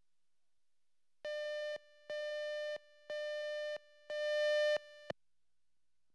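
Four electronic beeps of one steady pitch, about a second apart, each lasting around half a second; the fourth is longer and louder and cuts off with a click.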